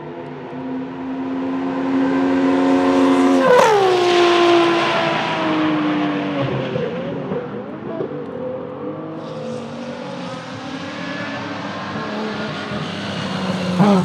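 BMW 3.0 CSL race car's 3.2-litre straight-six running at high revs. It grows louder as the car closes in, and its pitch drops sharply as it passes about three and a half seconds in, then the revs waver unevenly. A second pass builds through the second half and ends in another sharp pitch drop at the very end.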